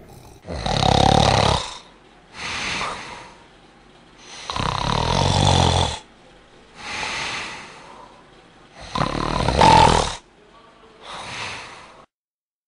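A girl fake-snoring for comic effect: three loud snores about four seconds apart, each followed by a softer breath out.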